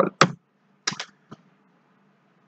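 Computer keyboard keystrokes: a few separate key clicks, the last number of the input being typed and Enter pressed.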